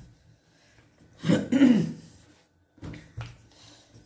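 A short throat-clearing sound about a second in, with a few faint knocks of a wooden rolling pin working biscuit dough on a wooden table later on.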